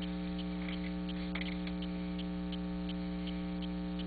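Steady electrical mains hum on the recording, a buzz of several fixed tones that holds unchanged throughout, with faint small ticks scattered over it.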